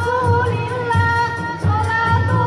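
A women's rebana group singing a sholawat devotional song in unison over rebana frame drums, the voices holding long notes above a steady low drumbeat.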